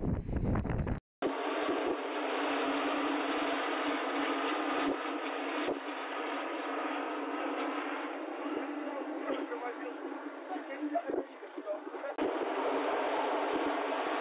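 Blizzard wind rushing steadily as a dense hiss. It cuts out for an instant about a second in, then carries on thinner and muffled.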